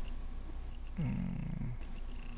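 A domestic cat purring steadily, a low, finely pulsing rumble. About a second in there is a short, low sound with a falling start that lasts under a second.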